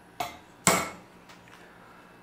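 Hammer striking a punch held against a thin steel mounting bracket in a vise, twice, the second blow louder, each with a short metallic ring: punch marks for drilling the mounting holes.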